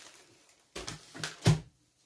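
Groceries being handled and set down on a kitchen table: three short knocks, the loudest about one and a half seconds in.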